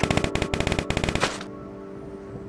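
A rapid run of sharp clicks, about a dozen a second, that stops after just over a second, over a held electric-piano chord that lingers on quietly.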